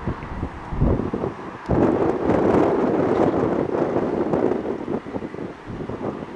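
Wind buffeting the microphone, with a strong gust starting suddenly about two seconds in that eases off after a few seconds.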